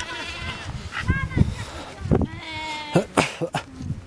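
Sheep and lambs bleating: a quavering bleat at the start, a short one about a second in, and a longer, wavering one around two and a half seconds in.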